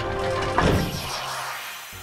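A cartoon sound effect of heavy mechanical claws clamping onto a small car: a loud crashing clank about half a second in that rings out and fades over a second. Background music plays underneath.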